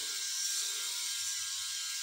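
VeroShave 2.0 rotary-head electric shaver running steadily as it is moved over stubble on the scalp around the ear, an even, high-pitched motor sound.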